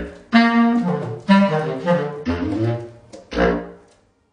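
Selmer Paris Privilege bass clarinet playing a short jazz phrase: groups of notes starting about a second apart, the last one dying away near the end.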